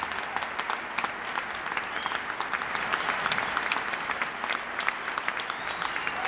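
A large audience applauding steadily, a dense patter of many hands clapping that goes on without a break.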